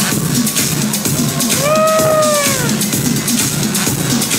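Electronic dance music playing loudly over a club sound system, with a steady beat. About halfway through, a single held note rises, holds, then slides down over about a second.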